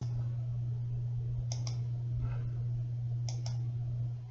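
Two quick pairs of sharp clicks, about a second and a half apart, over a steady low electrical hum.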